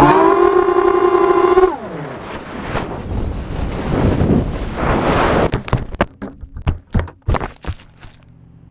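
FPV racing quadcopter's small brushless motors whining, then dropping sharply in pitch as they wind down about two seconds in. A rising rush of wind noise follows as the quad falls. From about five and a half seconds a quick series of sharp knocks and thuds comes as it crashes through branches into the grass.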